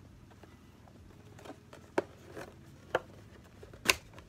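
A cardboard ornament box being handled and opened by hand: five or so sharp clicks and taps of the card, the loudest just before the end.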